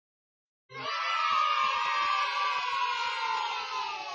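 Audience cheering and applauding, starting suddenly about a second in.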